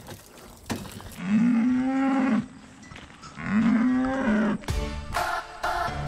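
A cow mooing twice, each a long, low call of about a second with a pause between; music starts near the end.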